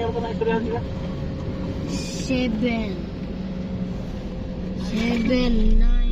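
Road and engine noise inside a moving car's cabin, with a high-pitched voice calling out briefly a few times. The low rumble grows louder near the end.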